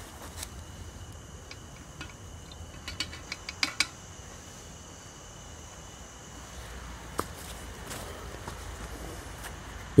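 Pedestal fan running steadily, with a few light clicks and taps as a small plastic measuring spoon and glassware are handled to add sodium nitrate to hydrochloric acid. The clicks come in a quick cluster about three to four seconds in, with a single one near seven seconds.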